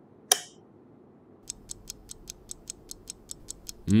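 A light switch clicks once, then, about a second and a half later, a clock-ticking sound effect starts: rapid, about six ticks a second, counting down the time limit.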